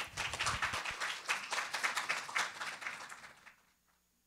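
Audience applauding, fading out after about three seconds.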